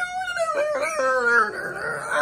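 A man's wordless, high-pitched vocal wail in a rock-singing style. It starts abruptly, wavers, breaks off about a second and a half in, and turns into a rougher, strained vocal sound.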